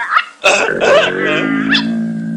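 Cartoon dog, an animated St. Bernard, barking several times over background music.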